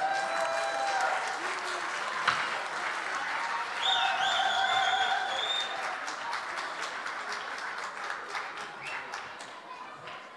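Audience applauding and cheering, the applause dying away toward the end.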